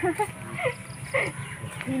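Short fragments of people talking over a steady low rumble.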